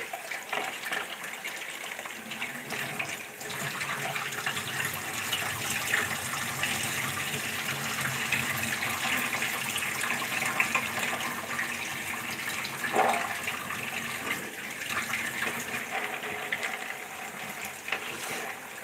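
Water running steadily, as from a tap, with a few short knocks along the way.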